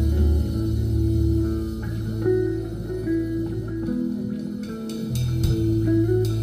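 Live band playing an instrumental passage: a hollow-body electric guitar picks a melody over held electric bass notes, with drums in the background. The bass falls away for about a second past the middle, and a few sharp percussion hits come near the end.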